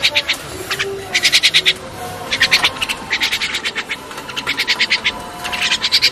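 Javan mynas feeding at a steel tray of black soldier fly maggots, making five or six short bursts of rapid, harsh clicking about a second apart.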